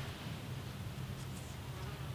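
An insect buzzing in a steady low drone, with a brief click at the very start.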